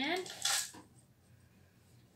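Crushed chalk powder tipped off a folded paper towel into a plastic cup of water: one brief rustling pour about half a second in.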